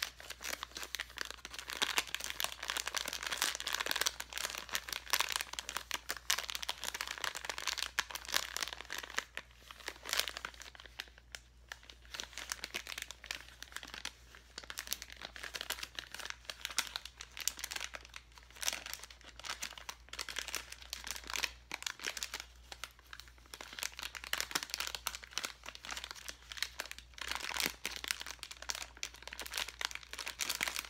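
Clear plastic bag of glitter foam letters crinkling as it is squeezed and rubbed between the hands: a dense, continuous run of crackles, with a short lull about eleven seconds in.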